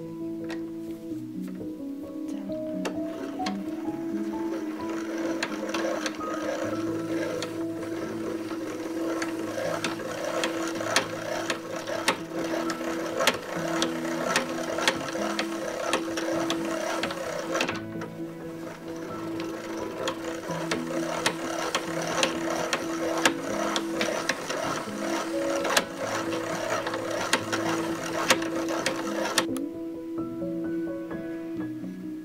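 Hand-cranked bobbin winder whirring with rapid gear clicking as weft thread winds onto a quill. The winding breaks off briefly about two thirds of the way through, then runs on. Background music with sustained notes plays underneath.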